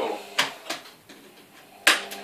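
Sharp plastic clicks as a prying tool works at the keyboard's retaining clips on an Asus Eee PC netbook: two lighter clicks in the first second, then a much louder click near the end.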